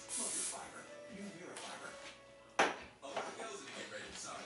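Aerosol hairspray sprayed in one short hissing burst of about half a second at the start. A sharp knock comes about two and a half seconds later and is the loudest sound.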